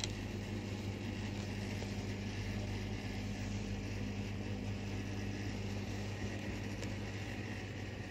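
Steady machine hum: a low drone with an even hiss above it.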